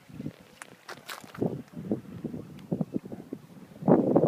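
Footsteps crunching over rocks and mussel shells, an uneven series of short steps with small sharp clicks among them.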